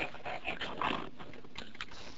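Soft, breathy chuckling: a man's laughter trailing off in a few short exhalations.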